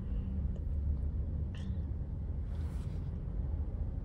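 Steady low road rumble inside the cabin of a moving car, picked up by a phone's microphone, with a brief faint sound about a second and a half in.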